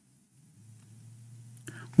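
A pause in speech: near silence, then a faint steady low hum fades in about a quarter of the way through, with a short breath and mouth click near the end as the man draws in air to speak again.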